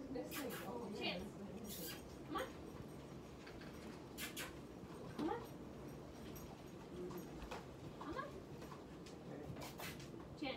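A household pet's short rising calls, about four of them a few seconds apart, with a few light clicks in between.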